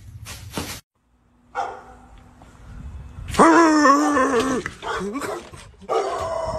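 A pit bull giving a long, wavering howl that starts about three and a half seconds in and lasts just over a second, followed by a shorter rising cry.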